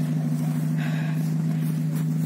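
A minibus engine idling steadily: an even, low hum with no revving.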